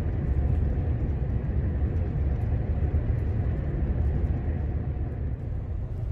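Steady low rumble of a tour bus's engine and tyres on the road, heard from inside the passenger cabin while it travels at highway speed.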